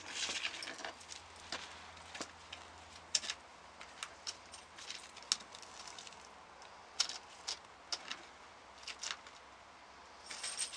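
Sulcata tortoise crawling over dry sticks, leaves and paper debris: faint, irregular crackles and scrapes, a few a second, with some louder snaps.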